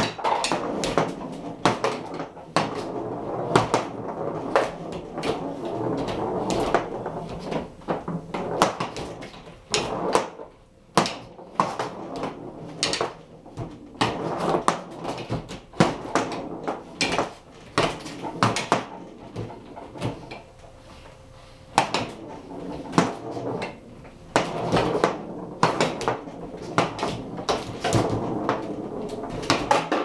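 Foosball table in fast play: irregular sharp clacks and knocks of the plastic players striking the ball and the rods being slid and spun, over a steady rattle. The busy stretches are broken by a couple of brief lulls.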